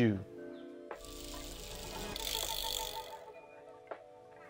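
Logo sting sound effect: a hissing whoosh with a low rumble swells from about a second in and fades out about three seconds in, over steady held music tones, with a sharp click just before the end.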